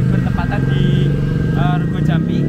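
Motorcycle engine running close by in street traffic, a steady low drone.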